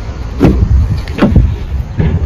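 Rear door of a Volkswagen Lavida sedan opened by its exterior handle: two clunks from the handle and latch releasing, about half a second and a second and a quarter in, over a steady low rumble.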